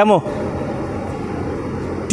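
Steady, even background noise of a large indoor hall with no distinct hits, after one short spoken word at the very start.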